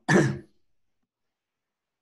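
A man gives one short cough, clearing a tickly throat.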